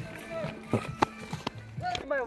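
Footsteps on dry grass, with a few sharp clicks near the middle and faint voices behind.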